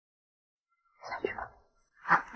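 Silence, then about a second in a brief, soft spoken utterance lasting about half a second.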